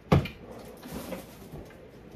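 A single sharp knock just after the start, followed by faint handling noise.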